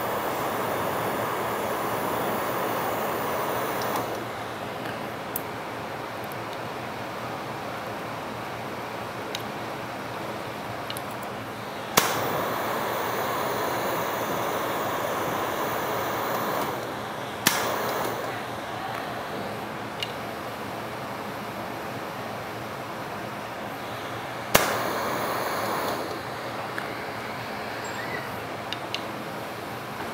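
Glassblowing bench torch flame burning with a steady hiss. Three times the hiss jumps abruptly louder and stays up for a second to several seconds before settling back.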